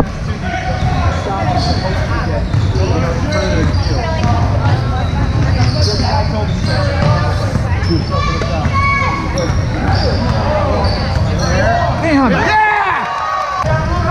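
Indoor basketball game: a ball bouncing on a hardwood court and short high squeaks of sneakers, with players and spectators talking and calling out, over a steady hum in a large echoing gym.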